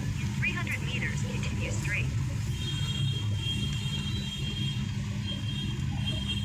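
Cabin noise of a moving taxi car: steady low engine and road rumble. A thin high-pitched tone sounds twice in the second half.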